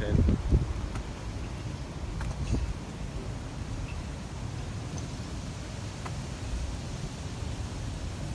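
Wind rumbling on the microphone over open outdoor ambience, with a few faint short ticks.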